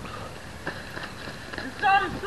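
A few faint knocks over steady outdoor background noise, then a loud, high-pitched shout from a person near the end.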